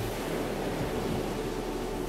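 Ocean surf washing onto a sandy beach: a steady rushing noise.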